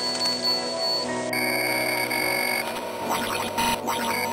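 Intro music made of sustained electronic tones and drones, which switches to a new set of steady tones about a second and a half in, with brief glitchy bursts near the end.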